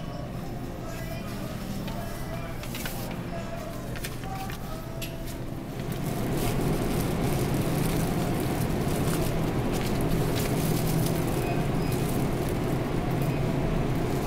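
Supermarket background noise: faint background music at first, then from about six seconds in a louder, steady low rumble and hiss.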